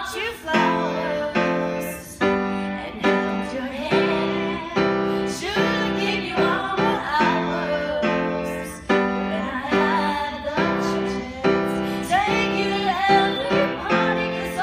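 A woman singing a ballad into a microphone, accompanied by a grand piano playing chords struck again and again, about one or two a second.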